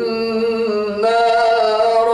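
A man reciting the Quran in a slow, melodic chant, drawing out one long vowel that shifts in pitch about a second in.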